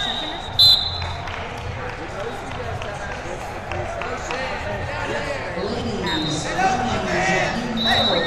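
A gym full of voices from coaches and spectators, with a short, loud referee's whistle blast about half a second in that restarts the wrestling bout. A shorter whistle tone comes again about six seconds in.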